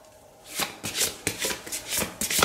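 A deck of Lenormand cards being shuffled by hand: a quick run of short, papery strokes, about half a dozen a second, starting about half a second in.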